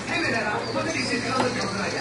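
Indistinct background voices with a knife tapping once on a wooden cutting board about one and a half seconds in, as a tomato is sliced.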